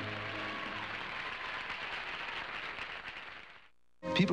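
A song's last held chord fading out under audience applause, which dies away shortly before the end.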